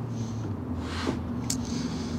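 Quiet room tone with a steady low hum and two faint clicks in the second half, from the grand piano's key frame and action being handled.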